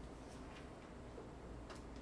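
Quiet library reading-room ambience: a steady low hum under a few faint, light clicks and ticks, with one click a little past the middle more distinct than the rest.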